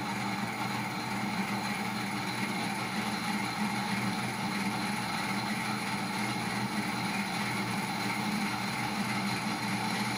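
Electric motor driving a small rotating-machine test rig, running steadily: an even whirring noise with several steady tones that do not change.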